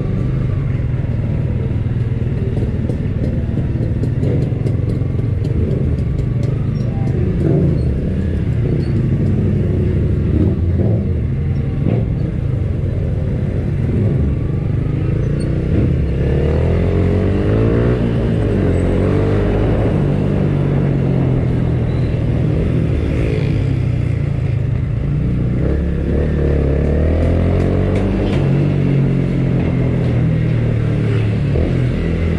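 Motorcycle engine heard from on the bike, running at low speed in traffic. Its revs rise and fall as it pulls away, most clearly in the middle and again near the end.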